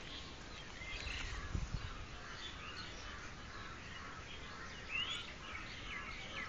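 Faint outdoor ambience with birds chirping and calling now and then. There are a few soft low thumps about a second and a half in.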